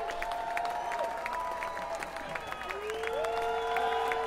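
Concert audience applauding and cheering, with many separate hand claps. Several long held tones run over the clapping, each sliding in pitch where it ends.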